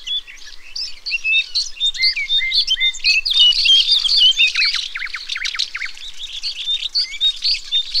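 Several songbirds singing at once in a dense chorus of short chirps, whistles and quick falling notes. It is busiest about three to five seconds in.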